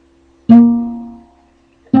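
A guitar note plucked about half a second in, ringing with clear overtones and dying away over about a second. Just before the end a fuller, louder strum of several strings begins.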